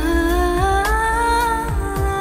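Indian devotional song (Jain bhajan): a wordless vocal line, hummed and held, climbing in pitch in small steps over backing music with a deep bass and two drum beats.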